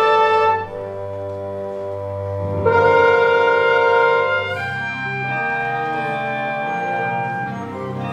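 Orchestral theatre music led by brass: a loud held chord breaks off about half a second in, a second loud chord swells in at around two and a half seconds and stops at about four and a half, then softer sustained chords carry on.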